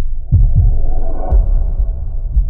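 Outro logo sting: loud, deep bass thumps in a throbbing, heartbeat-like pattern, with a sustained synth tone coming in about half a second in.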